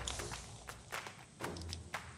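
Faint scattered clicks and rustling as an aluminium tent-pole tip is fitted into the metal ring at a tent corner, with hands brushing dry leaves on the ground.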